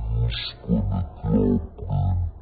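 A man's voice repeating the same short syllable over and over, about every two-thirds of a second, low and gruff.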